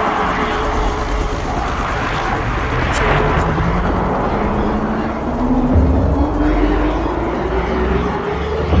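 Helicopter hovering overhead: a loud, steady rush of rotor and engine noise with a low rumble. About halfway through, a low tone comes in and rises slowly in pitch.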